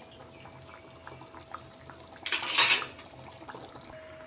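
Egg kulambu simmering in a stainless steel pan, with soft bubbling and small ticks. About two seconds in, a metal ladle scrapes against the pan for under a second; this is the loudest sound.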